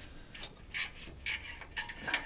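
Ratchet wrench clicking in short, irregular runs as a 12 mm nut on an exhaust oxygen-sensor flange is turned, the nut already broken loose.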